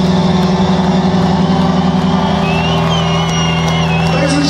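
Live rock band letting a final chord ring out, a loud low drone of guitar and bass held steady through the PA. About two and a half seconds in, a high wavering whistle comes in over it.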